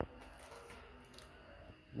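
A single sharp click, then a few faint small ticks and rustles of a mobile phone and power-supply test leads being handled on a workbench.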